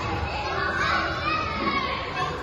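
Children playing and calling out in a large indoor play hall, a steady hubbub of young voices, with one child's high-pitched call standing out from about half a second in for just over a second.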